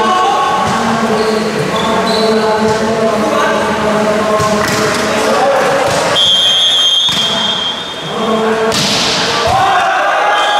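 Indoor volleyball match: a ball bouncing on the hall floor while spectators' voices carry on throughout. A short, high referee's whistle comes about six seconds in, and the serve is hit about three seconds later.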